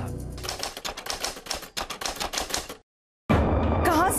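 Rapid typewriter-style key clatter, several sharp clicks a second for about two and a half seconds, used as a transition sound effect. It cuts off into a brief dead silence, and music comes in near the end.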